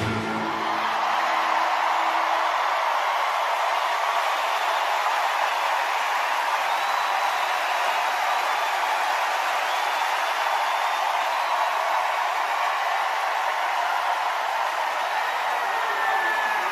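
A large audience applauding steadily and evenly. The last note of the band's rock music dies away in the first couple of seconds.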